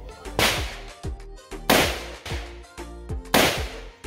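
Three rifle shots from an M16-style rifle, about a second and a half apart, each a sharp crack with a short echo. Background music with a steady beat plays under them.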